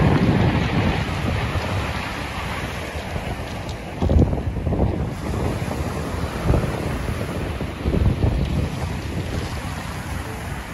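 Sea waves breaking and washing up a shingle beach, with gusty wind buffeting the microphone. Gusts surge about four seconds in and twice more later.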